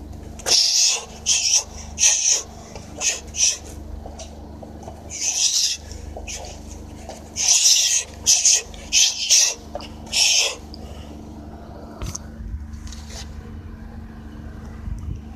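Sharp hissing breaths pushed out in quick runs, one with each punch while shadowboxing, over a low steady hum. The runs die away about eleven seconds in.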